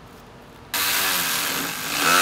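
Cordless power tool running on the fan shroud's lower T30 Torx bolt, starting suddenly about two-thirds of a second in and running on loudly, its motor pitch shifting as it spins.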